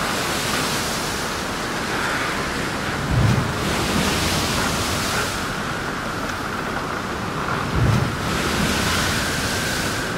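Steady rushing sound of ocean surf, swelling and easing every few seconds, with two short low thuds about three and eight seconds in.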